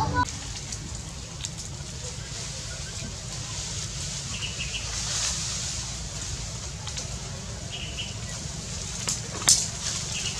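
Outdoor forest ambience with a steady hiss and low rumble. Short, faint chirps come about four and a half and eight seconds in, and a single sharp click comes near the end.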